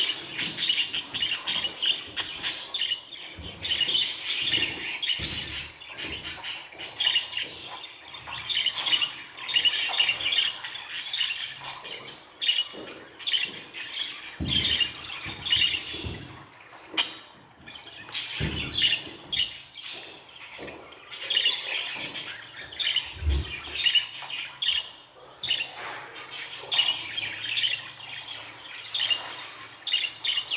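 Budgerigars chattering: rapid chirps, warbles and squawks in bursts of a few seconds with short pauses between. A few soft low knocks and one sharp click come in the middle.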